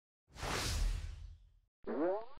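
Logo sound effect: a whoosh over a low rumble that fades out over about a second, followed near the end by a short rising tone.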